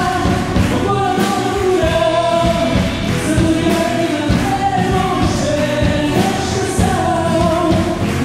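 Live band performance: a woman and a man singing together, with a drum kit keeping a steady beat and a guitar accompanying.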